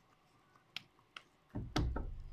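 Two sharp mouth clicks from chewing and lip-smacking, about half a second apart, then a dull low thump with more clicks near the end.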